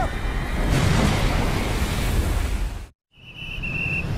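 Blizzard wind from a film soundtrack, a loud even rushing noise that cuts off abruptly about three seconds in. After a brief silence, street-traffic noise begins with a high steady electronic tone.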